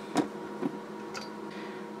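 A low steady electrical hum with a few brief light clicks, as a cylindrical lithium-ion cell and multimeter test probes are picked up by hand.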